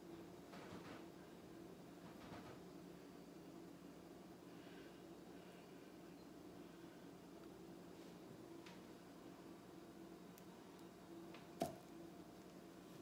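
Near silence: room tone with a steady low hum, a few faint soft sounds in the first couple of seconds, and one short sharp click near the end.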